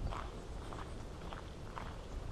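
Footsteps walking on an asphalt road, about two steps a second, over a low steady rumble.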